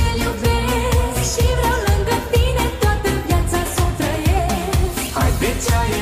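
Romanian manele pop song: a sung vocal melody over a steady dance beat, mixed with a '16D' spatial panning effect.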